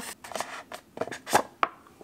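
A tight cardboard sleeve being slid off a cardboard perfume box: a run of dry scraping rustles and small clicks, with two sharper ticks about a second and a half in.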